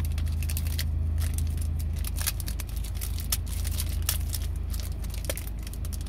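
A chocolate bar's plastic and foil wrapper being handled and peeled open, crackling in quick irregular clicks, over the steady low hum of a car.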